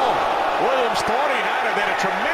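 A man's voice talking, the play-by-play commentary of the televised football game, with a single short knock about halfway through.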